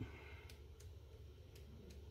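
Near silence: a low steady room hum with a few faint ticks of paper as the pages of a sticker book are leafed through.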